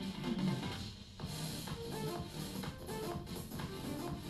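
Instrumental background music with short, repeated pitched notes over a light steady beat.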